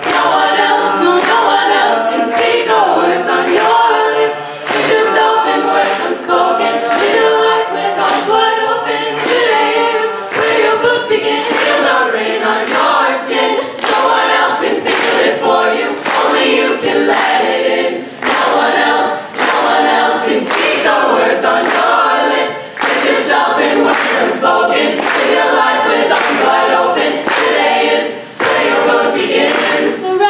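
A cappella group of mixed men's and women's voices singing a song in harmony over a steady beat.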